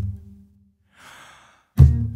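Acoustic guitar playing a sparse, rhythmic intro: a struck chord dying away at the start, a gap with a short audible breath about a second in, and the next chord struck hard near the end.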